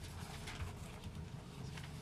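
Papers handled on a table near a desk microphone: faint, irregular rustling and soft light knocks.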